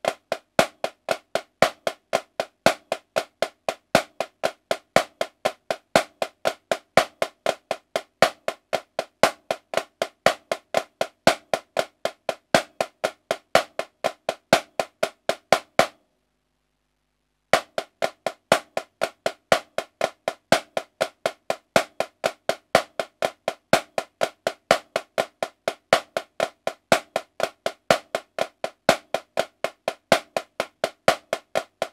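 Marching snare drum played with sticks in a steady, even stream of sixteenth-note strokes with regular accents: the choo-choo moving-rudiment grid. The playing stops for about a second and a half just past the middle, then starts again.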